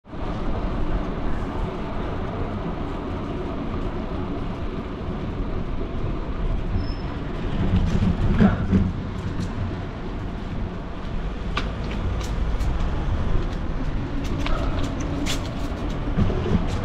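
Street ambience on a walk along a quiet city street: a steady low rumble that swells briefly about halfway through, with scattered light clicks and taps in the last few seconds.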